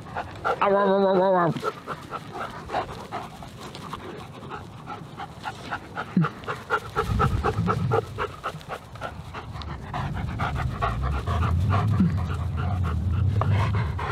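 German Shepherd panting hard and fast close to the microphone, several quick breaths a second. About half a second in, a short, loud, wavering voice-like cry stands out, and a low rumble builds in the second half.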